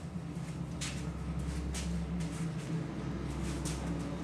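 A few scuffing footsteps on a concrete floor and the opening of a 1951 Crosley's door, over a steady low hum.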